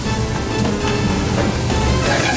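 Background music with held tones and a strong bass, over the sizzle of onions, peppers and shrimp frying in a pan.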